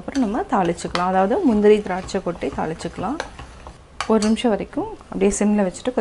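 A metal ladle stirring and mashing thick pongal in a steel pot, with clinks of metal on metal. A woman's voice is heard over it for most of the stretch and pauses briefly about halfway.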